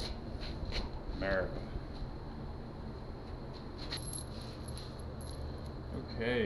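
Light metallic clicks and jingles of tools, parts or keys being handled while working on the bike, scattered in the first second and again later on, over a steady low hum. A short voice sound comes about a second in.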